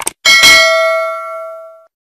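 A quick double click, then a bell ding that rings and fades out over about a second and a half: the notification-bell chime sound effect of a subscribe-button animation.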